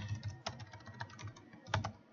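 Computer keyboard keystrokes: a handful of separate, irregularly spaced key presses as a short word is typed.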